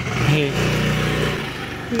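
Motorcycle engine running at a steady low pitch, setting in about half a second in, with a few words spoken over it near the start and end.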